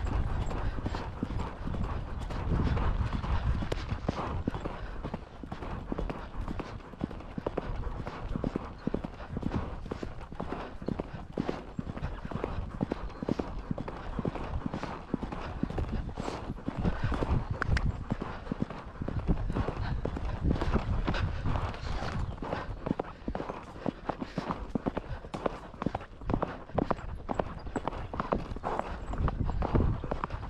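Hoofbeats of a ridden horse moving at pace over grass and a dirt track, a quick run of strikes over a low rumble that is heaviest in the first few seconds.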